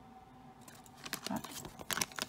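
Glossy plastic bag crinkling and crackling as it is handled, starting about half a second in and growing busier.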